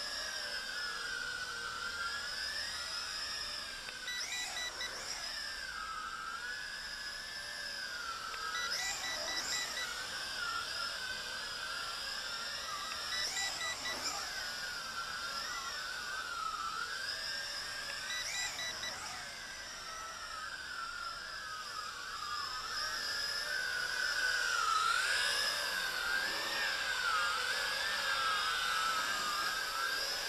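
JJRC X6 quadcopter's motors and propellers whining in flight, the pitch wavering up and down as the throttle changes and growing louder in the last few seconds. Four short runs of rapid electronic beeps sound over it, at about 4, 9, 13 and 18 seconds in.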